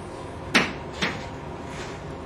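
A short knock about half a second in, then a fainter click about half a second later, over faint room tone.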